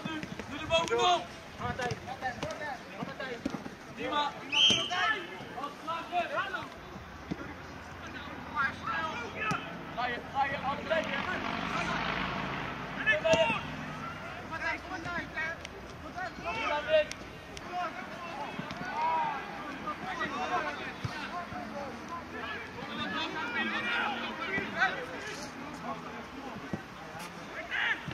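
Voices of players and spectators calling out and talking around a football pitch, with the occasional knock of the ball being kicked.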